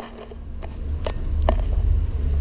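Low rumble of wind buffeting the camera microphone, swelling as the wearer walks out into the open, with three sharp taps of footsteps.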